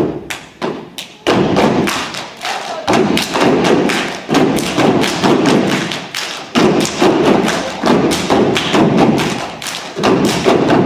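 Step team stomping and clapping in unison on a stage floor: a few separate stomps, then about a second in a fast, steady, loud beat of stomps and claps, with voices under it.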